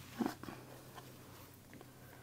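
Faint paper handling as a paper tag is slid into a paper journal pocket, with a brief rustle just after the start and a few light ticks.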